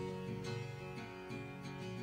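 Background music: acoustic guitar playing plucked notes, with a sequence of notes changing every half second or so.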